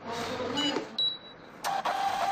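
Card payment terminal at work: a brief mechanical noise, a short high beep about a second in, then its built-in receipt printer starts running steadily about a second and a half in.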